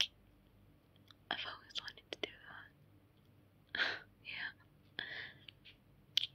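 A woman's breathy whispers close to the microphone, in three short stretches, with a few soft mouth clicks between them.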